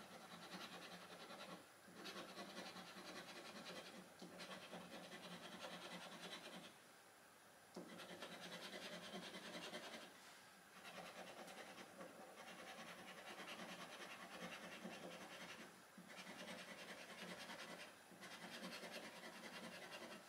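A coin scratching the scratch-off coating from a paper scratchcard. It is faint and comes in runs of a couple of seconds, broken by short pauses as the coin moves from panel to panel.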